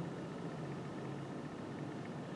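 Steady room tone: an even, low hiss with no distinct events.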